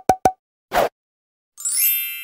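Sound effects of an animated logo intro: a quick run of short, sharp pops, then a brief whoosh just under a second in, then a bright shimmering chime that starts near the end and rings on.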